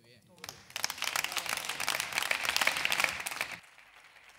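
Applause from a small group of people clapping their hands, starting about half a second in and stopping shortly before the end.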